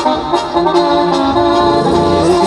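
Mexican banda brass band playing live: winds holding sustained chords over a tuba bass line.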